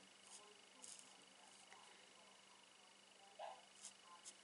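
Near silence: faint strokes of an alcohol marker nib on cardstock over a low electrical hum, then a short whimper from a dog dreaming in its sleep about three and a half seconds in.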